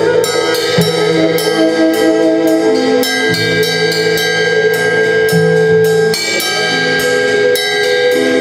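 Live small-group jazz: a tenor saxophone holds long notes over long low upright-bass notes that change about every two seconds, with steady cymbal strokes on a drum kit.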